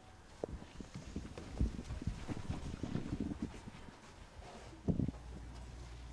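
Footsteps of several children walking across a floor: an irregular run of light knocks and scuffs, with one louder thump about five seconds in.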